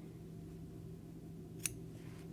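A low steady hum with a single short, sharp click about one and a half seconds in.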